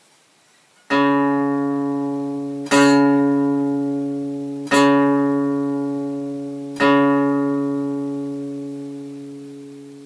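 A single guitar note plucked four times at the same pitch, about two seconds apart, each struck sharply and left to ring and fade.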